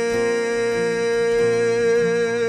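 A live band playing a slow worship song on acoustic guitar, keyboard and drums, over one long held note.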